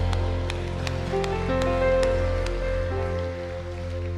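A live worship band holds a soft ending: sustained chords over a low bass note, changing chord a little over a second in. Light, evenly spaced ticks sit over it, about two or three a second, and the music grows quieter toward the end.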